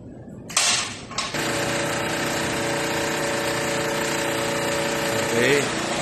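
Electric hydraulic power unit of a 3-in-1 busbar bending, cutting and punching machine. It starts up about half a second in and then runs steadily with a hum of several even tones.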